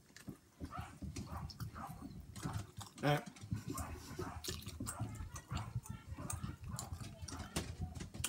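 A person chewing a mouthful of pizza close to the microphone: irregular mouth clicks and smacks.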